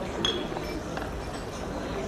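A drinking glass clinks once, about a quarter second in, with a short bright ring; a fainter tap follows near the middle.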